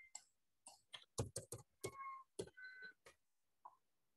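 Computer keyboard keystrokes: about a dozen faint, irregularly spaced key clicks as code is typed and deleted.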